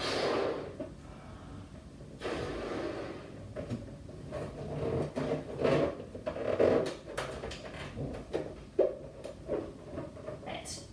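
Breath blown into a latex balloon to inflate it, two long puffs in the first few seconds. Then the rubber squeaks and rubs as the balloon's neck is stretched and knotted, with a short sharp snap near the end.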